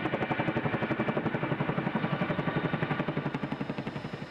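Boeing CH-47 Chinook's tandem rotors beating in flight: a rapid, even pulse that fades a little near the end.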